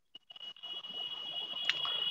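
Dead silence for about half a second, then a steady high-pitched tone over a faint hiss, with a brief click near the end.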